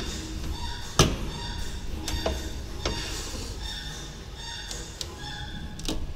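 Manual finger puncher punching a PVC conveyor belt: one loud sharp clack about a second in as the punch comes down, followed by several lighter clicks and knocks.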